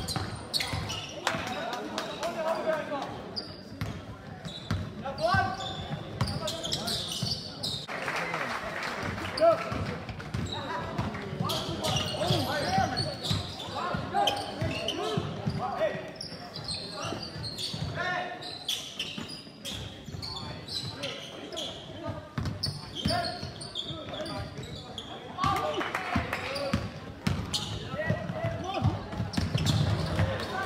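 Live basketball game in a sports hall: a basketball dribbled on the hall floor, with players and spectators calling out and talking, echoing in the large hall.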